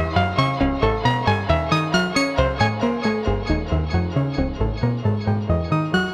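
Novation Bass Station II analog synthesizer playing a fast repeating sequence of short plucky notes, about four a second, stepping up and down in pitch. Its oscillator error is turned up, so each note comes in randomly detuned, slightly out of tune in a vintage-analog way.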